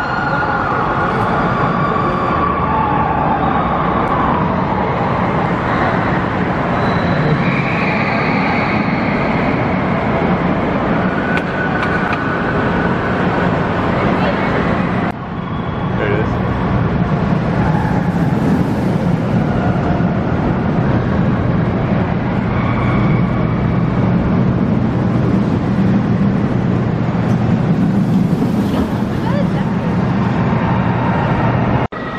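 Loud, steady din inside a large echoing hall: crowd chatter mixed with the rumble of a steel roller coaster train running on its track. The rumble and hiss swell twice in the second half. There is a brief drop in the sound about halfway through.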